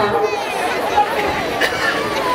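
Speech over a public-address system with crowd chatter underneath.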